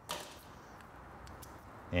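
A short knock as the removed stock Vespa footpeg is set down, followed by faint handling noise with a few light clicks.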